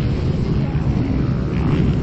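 Dirt-bike engines running around a motocross track, heard as a steady low drone whose pitch wavers.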